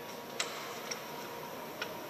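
A few faint, sharp clicks over quiet room tone: one shortly after the start, a fainter one about a second in, and another near the end.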